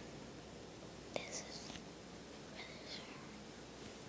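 Low whispering voices: two short whispered phrases, one about a second in and another near three seconds, over faint room hiss.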